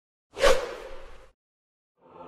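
A single whoosh sound effect for an opening transition: it comes in sharply about a third of a second in and fades away over about a second.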